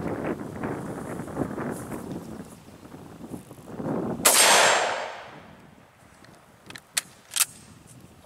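A single shot from a Mosin Nagant bolt-action rifle (7.62×54R) about four seconds in: a sharp, very loud crack with a tail that fades over about a second. Two short, sharp clicks follow near the end.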